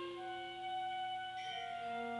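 School concert band playing a soft passage of sustained wind notes, held chords that shift about a second and a half in.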